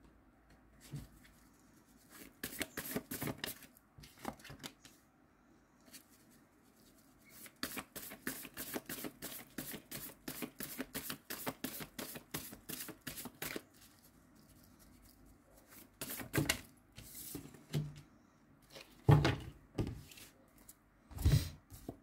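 A deck of tarot cards shuffled by hand: a quick run of soft card flicks, briefly at first and then for about six seconds. Near the end come a few louder taps and thuds as cards are handled and set down on a wooden table.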